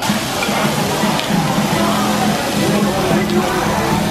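Beef pepper rice sizzling on a hot iron plate as it is stirred, a steady loud hiss, with music playing over it.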